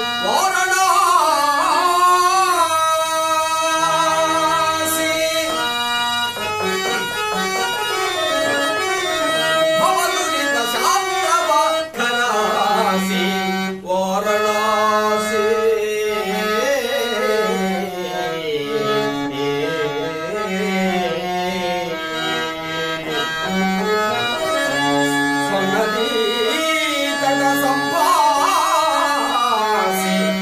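A man singing a Telugu padyam (devotional drama verse) in raga Bhimpalas, accompanying himself on harmonium. Long, ornamented vocal lines glide over held harmonium notes, with two brief breaths in the middle.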